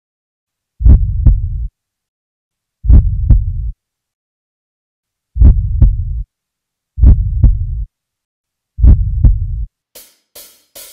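Heartbeat sound effect: five deep lub-dub double beats, unevenly spaced about two seconds apart, with silence in between.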